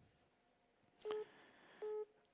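Two short electronic telephone beeps, about three-quarters of a second apart, on a quiet phone line.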